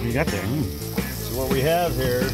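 Burger patties and hot dogs sizzling on a portable grill, a steady hiss, under background music with a singing voice.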